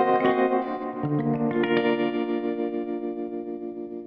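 Music: a guitar chord played through effects rings out with a regular wavering pulse and fades steadily, after a few plucked notes near the start.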